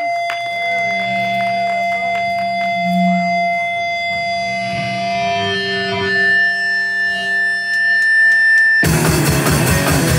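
Electric guitars through amplifiers holding long ringing notes and feedback tones, with scattered pick and string clicks. About nine seconds in, the full rock band with drums crashes in all at once.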